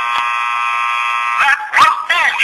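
A steady buzzing tone, held for about a second and a half and then breaking off into short wavering pitched sounds.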